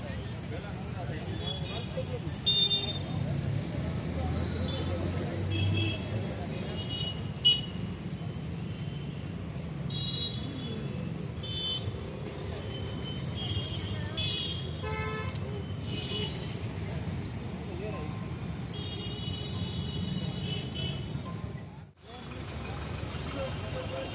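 Roadside traffic with vehicle horns honking again and again, mostly short toots and one longer honk near the end, over the rumble of passing vehicles and people talking.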